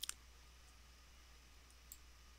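Near silence with a few faint clicks of a computer mouse: two close together at the start and one more near the end.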